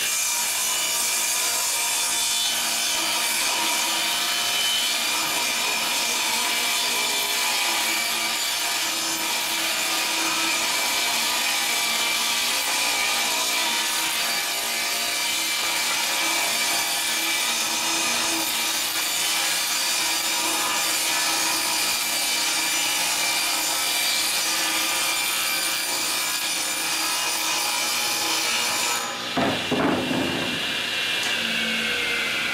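Table saw ripping a long sheet of OSB lengthwise: a steady, loud whine of the blade cutting through the board. Near the end the cut finishes and the saw runs on free.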